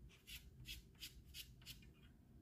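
Faint soft swishes, five in about a second and a half, of a billiard cue shaft sliding back and forth over a gloved bridge hand during practice strokes before the shot.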